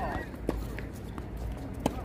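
Tennis balls struck by rackets in a doubles rally on a hard court: two sharp pops about a second and a half apart, with fainter ticks of bounces and footsteps between.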